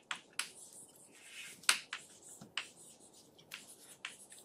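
Chalk writing on a chalkboard: a series of sharp taps as the chalk strikes the board, the loudest a little before two seconds in, just after a short scratching stroke.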